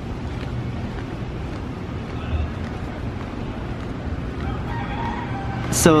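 A rooster crowing faintly near the end, over steady street background noise with a low hum.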